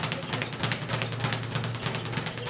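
Speed bag being punched rapidly, the bag slapping against its wooden rebound board in a fast, even rhythm of sharp knocks, several a second.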